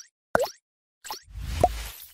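Cartoon-style sound effects of an animated logo reveal: two quick plops, each a short bend in pitch, about half a second apart, then a whoosh with a brief rising tone.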